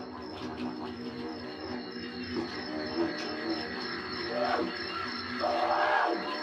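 Didgeridoo playing a steady drone with sweeping rises and falls in tone, most marked near the end, as part of live dub band music.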